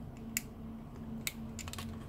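Small plastic clicks from a sensor-cable plug being fitted to the IP-Box 3: two sharp clicks about a second apart, then a few lighter ticks near the end, over a faint steady hum.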